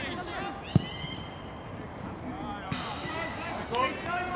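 Players' voices calling across a football pitch, faint and distant, with one sharp thud a little under a second in.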